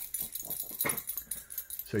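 A dog close by making a few short, irregular clicking and breathy sounds.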